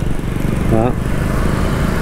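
Small motorbike engine running steadily while riding in traffic, with road and wind noise over the microphone.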